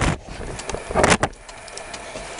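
Handling noise from a camera being repositioned and set in place: a broad rustle about a second in, followed by a few light clicks and knocks.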